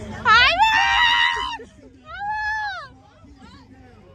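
A person's loud, high-pitched yell that sweeps up and is held for about a second, followed by a shorter rising-and-falling shout about two seconds in.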